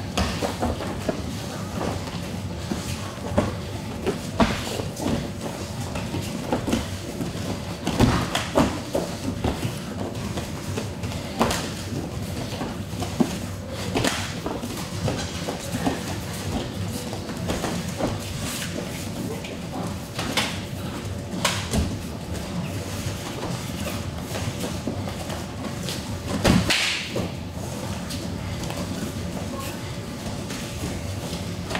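Gloved punches and kicks landing and bare feet slapping the vinyl mat of an MMA cage, making irregular thuds of varying strength, with one louder burst near the end.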